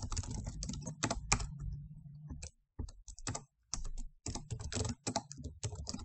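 Typing on a computer keyboard: quick runs of keystrokes with a brief pause about two and a half seconds in.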